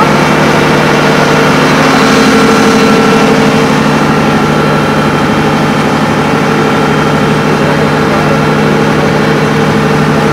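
A ferry boat's engine running at a steady speed: a loud, even drone.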